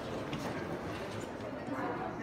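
Footsteps of a group of people walking on a hard tiled floor, many shoes clicking irregularly over a background of mixed voices.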